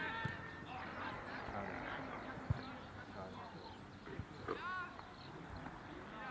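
Distant shouted calls from youth football players across the pitch, one short rising-and-falling shout coming about four and a half seconds in, with a single sharp knock about two and a half seconds in.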